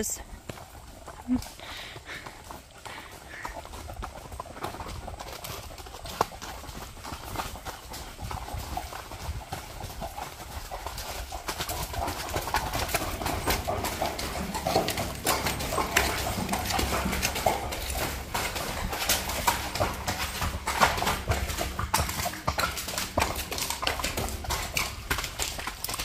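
Hooves of several horses walking on a gravel and dirt trail, an irregular clip-clop that grows louder about halfway through as the horses pass through a corrugated steel culvert tunnel.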